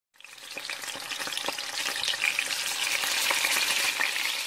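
Food sizzling and crackling as it fries in a hot pan, with scattered pops, fading in at the start.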